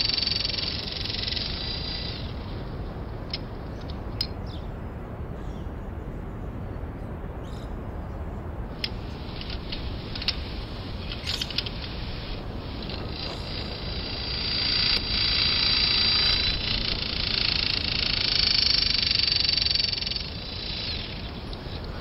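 Battery-powered press tool crimping copper press-fit fittings. Its motor runs with a high whine that stops about two seconds in. A few clicks follow as the tool is moved and set on the next fitting, then a second press cycle whines for about five seconds before stopping near the end.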